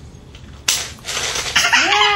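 A sudden loud burst of noise a little after the start, lasting about a second, then a toddler's voice rising into a long, high squeal near the end.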